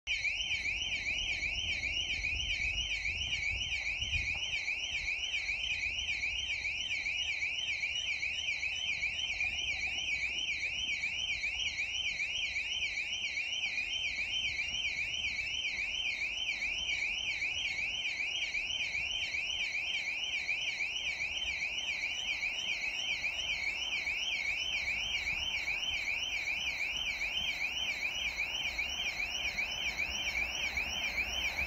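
A continuous electronic warbling alarm tone, its pitch swinging up and down several times a second without a pause, with a faint low rumble underneath.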